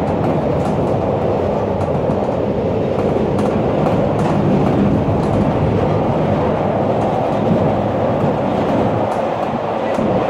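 Chicago 'L' rapid-transit car running along the track, heard from inside the car: a steady rumble of wheels and running gear with faint clicks from the rails.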